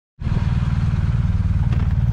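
Motorcycle engine idling, a steady low pulsing rumble.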